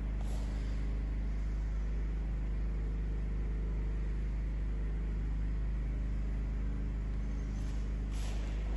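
A steady low hum with an even background noise, unchanging throughout; no distinct strikes or footfalls stand out.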